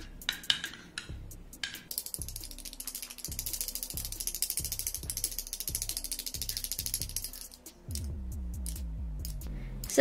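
Metal spoon stirring thickening slime in a small glass bowl: a few clinks against the glass, then from about two seconds in a fast, even ticking rattle that stops shortly before the end.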